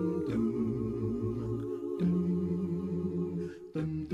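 A cappella gospel singing: several voices in harmony hum long held chords that change every second or two, with a brief break near the end.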